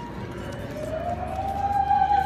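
A woman singing opera, holding one long high note that rises slightly in pitch and swells louder over the second half.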